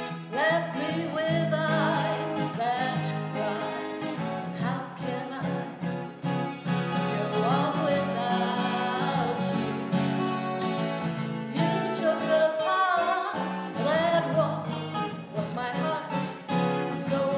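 A woman sings a slow vocal melody, holding and sliding between notes, over acoustic guitar accompaniment.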